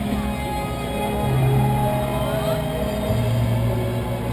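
Live rock band music carrying from an outdoor concert stage, loud and steady, with held low notes that step down in pitch about a second in and again near the end.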